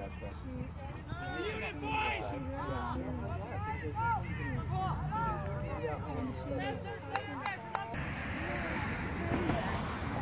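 Several voices of spectators and players talking and calling out over one another on a soccer field, with a few sharp clicks about seven seconds in.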